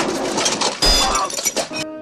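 A crashing, clattering sound effect of something breaking, with a heavy thud about a second in, over background music; it stops just before the end.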